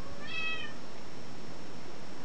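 A single short, high-pitched animal call, about half a second long just after the start, over a steady faint background hiss.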